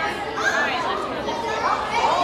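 Indistinct chatter of several people's voices, no words clear.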